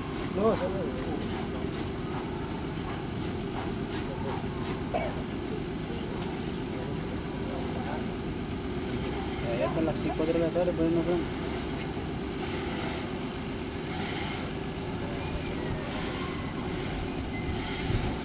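A steady low hum of a running engine, with faint voices for about a second around ten seconds in.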